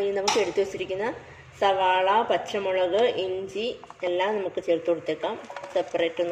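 Speech: a person talking without pause, narrating a cooking step.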